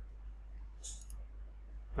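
A single short computer-mouse click about a second in, over a faint steady low electrical hum.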